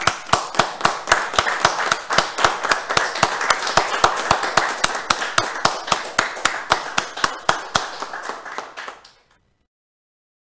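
Hand clapping from a small group, with one set of claps close to the microphone standing out at about five a second over the rest. It fades and stops abruptly about nine seconds in.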